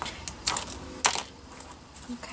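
Small sharp plastic clicks as a pin is pushed out of the wheel of a small decorative wicker bicycle to take the wheel off, with two louder clicks about half a second and a second in.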